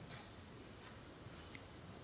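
A pause in speech: faint room tone with a few soft ticks, the clearest about one and a half seconds in.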